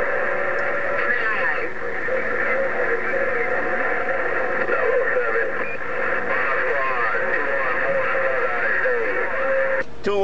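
Received audio from a President HR2510 radio tuned to 27.085 MHz: a crowded wash of distant stations talking over one another, garbled, with wavering whistles mixed through it. It cuts off just before the end, when a clearer voice comes through.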